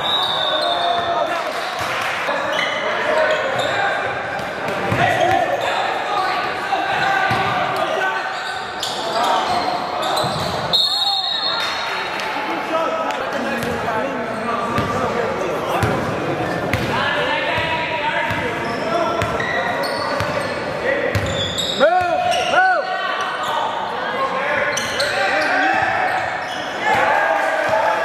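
Basketball game on a hardwood gym floor: the ball bouncing as it is dribbled, sneakers squeaking, and indistinct calls from players and onlookers, all echoing in the large hall. A few sharp squeaks stand out a little past the middle.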